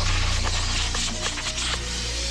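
Redline Easy 50 powder coating gun spraying powder onto a wheel, a loud steady hiss of compressed air, over background music.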